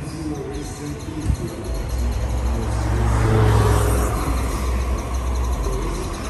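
A motor vehicle passing close by: a low rumble that builds from about two seconds in, is loudest around the middle, then eases off.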